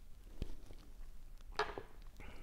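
Quiet sounds of whisky being drunk from shot glasses: a soft knock about half a second in, then near the end a short, sharper clack of a shot glass being set down on the bar counter.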